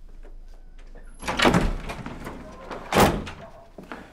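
A door thrown open abruptly: a loud rush of sound about a second and a half in and a sharp bang at about three seconds, with a few lighter clicks around them.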